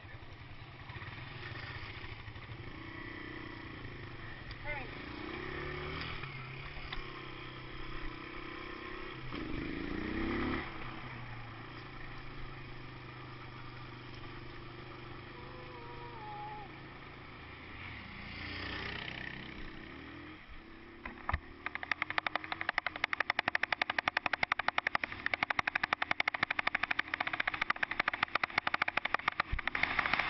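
Trail motorcycle engine running on a gravel track, revving up and falling back several times. About two-thirds of the way in, a loud, rapid rattling buffet takes over as the bike speeds along and the camera shakes.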